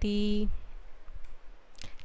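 A woman's voice holding the final syllable of a chanted Sanskrit verse on one steady note for about half a second, then a quiet pause with a few faint clicks.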